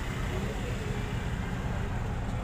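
Outdoor harbour background: a steady low rumble with faint distant voices.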